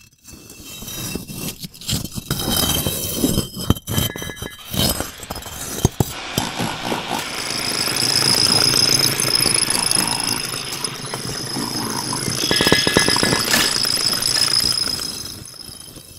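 Experimental sound collage of sharp clinks and knocks, running from about six seconds in into a dense, steady scraping texture with a high ringing tone. It cuts off abruptly at the very end.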